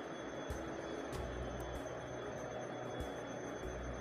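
Oil sizzling steadily in a small nonstick frying pan as stuffed papad rolls fry, with a few faint clicks of a steel spatula against the pan.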